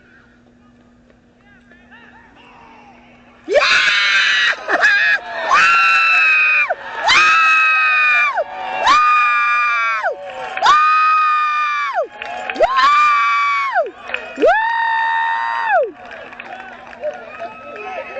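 A spectator close to the microphone screaming a string of about seven high-pitched "woo!" calls in cheering, starting a few seconds in. Each call is about a second long, sweeping up, held and dropping away.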